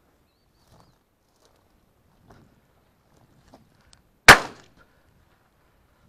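A single shotgun shot about four seconds in, very loud and sharp with a short fading tail, fired at a partridge flushed from in front of a pointing dog. Faint scattered rustles and ticks come before it.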